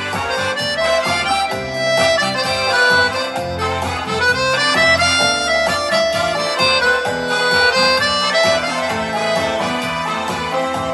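Piano accordion playing a lively cha-cha-cha tune: a shifting melody line over a steady, rhythmic bass.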